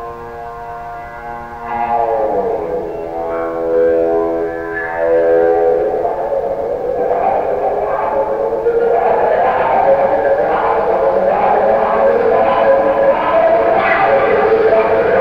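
Electric guitar played with a violin bow through heavy echo, in the bow section of a live rock performance: sustained, wavering tones that slide down about two seconds in, then a louder, denser scraping, echoing wash building from about six seconds on.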